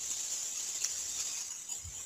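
Pause in speech: steady background hiss, with one faint click a little under a second in.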